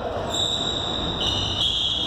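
Room tone of an indoor squash court between rallies: a steady background hum with a high-pitched whine that comes in about a third of a second in and shifts slightly in pitch partway through.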